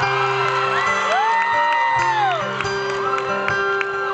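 Live acoustic guitar intro with long ringing notes, while audience members whoop and cheer; one long whoop rises and falls about a second in.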